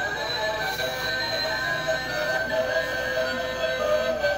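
Toy candy-grabber machine playing its built-in electronic tune, a tinny melody of steady held notes.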